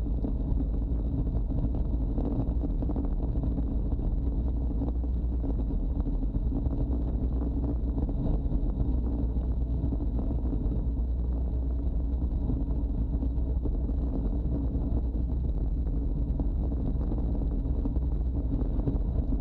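Steady wind rushing over a bike-mounted camera's microphone while a road bike is ridden, with a low rumble from the road and no breaks.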